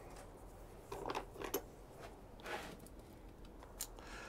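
Faint, brief rustles and light clicks from hands handling seed packets and pots, a few scattered over a few seconds of otherwise quiet background.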